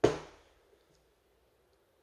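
An Einhell Power X-Change 18 V 5.2 Ah battery pack set down upright on a workbench: one sharp knock of its plastic case right at the start, dying away within about half a second.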